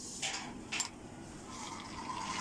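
A couple of brief rustles and knocks as a hand-crank barbecue blower is handled, then a steady whir that starts near the end as its crank is turned and the fan spins up.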